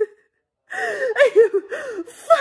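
A woman crying hard: high, wavering sobbing cries without words. The sound drops out for about half a second near the start, then the sobbing resumes.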